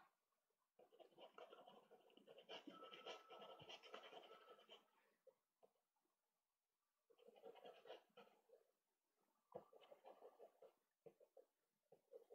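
Faint scratchy rubbing of a soft pastel stick stroked over Pastelmat, in three spells of short strokes: a long one from about a second in, another around eight seconds, and a shorter run near the end.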